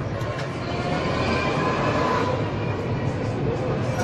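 City tram passing close alongside, its steel wheels rumbling on the rails. The rumble swells about a second in and eases slightly near the end.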